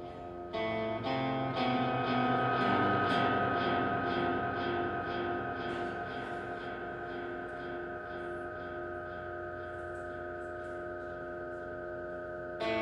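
Experimental live music: electric guitar picking repeated notes about twice a second through echo and other effects, over a long steady high tone held throughout.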